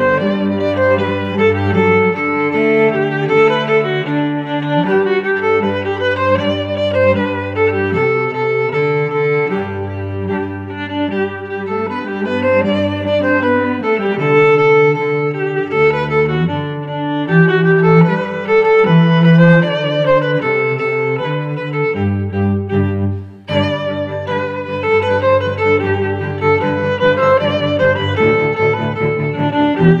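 Instrumental background music of long held notes, with a short dip in level about three-quarters of the way through.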